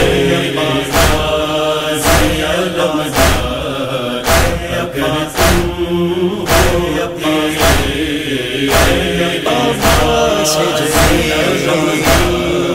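A male voice reciting an Urdu noha, a Shia lament, in a drawn-out chanted melody over a steady deep beat that strikes about once a second.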